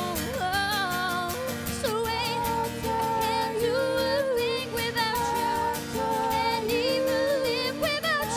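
Two women singing together to an acoustic guitar, in long held notes that waver in pitch, over a steady strummed rhythm.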